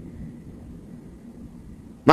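Faint, steady low rumble of background noise, room tone with no distinct event.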